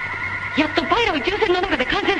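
A high-pitched voice talking in quick phrases that rise and fall, over steady high electronic tones.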